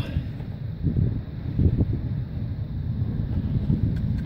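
Wind buffeting the microphone outdoors: an uneven low rumble with no steady tone.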